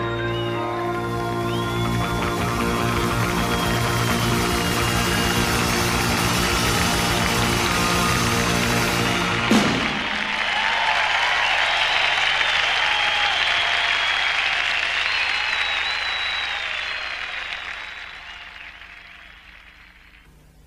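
Rock band holding a long final chord, which ends with one sharp drum hit about halfway through. Audience applause and cheering follow and fade away near the end.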